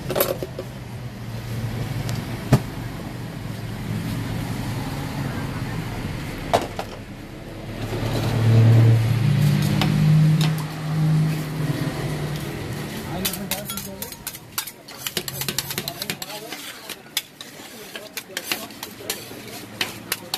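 Metal spatulas scraping and tapping on a steel cold pan as rolled ice cream base is spread and chopped, with a quick run of clicks and clatter in the second half. A low steady hum runs under it and is loudest around the middle.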